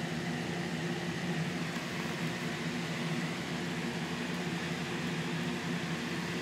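A steady mechanical hum: a low drone of several even tones over a faint hiss, unchanging throughout.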